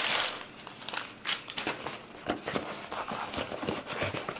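Crumpled brown packing paper crinkling and rustling as it is pulled out and handled along with a cardboard shipping box, in irregular bursts of crackle with small knocks.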